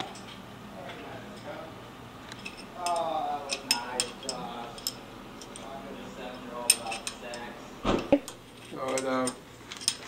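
Scattered sharp metal clinks and taps as a heavy root is bolted to a steel lathe faceplate under hanging hoist chains, with a low thump about eight seconds in. A man's voice speaks briefly in between.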